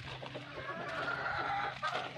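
Chickens clucking, with one drawn-out call from about half a second in until near the end.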